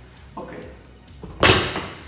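A 70 kg barbell loaded with rubber bumper plates set down on the gym's rubber floor at the end of a set of deadlifts: one loud thud about one and a half seconds in, dying away quickly.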